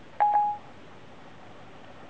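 iPhone 4S Siri chime: one short electronic beep, about half a second long, near the start, marking that Siri has stopped listening to a dictated phrase; then quiet room tone.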